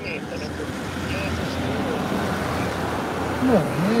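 Road-vehicle noise, a steady rushing that swells over the first second and then holds, with a faint voice under it and a man starting to speak near the end.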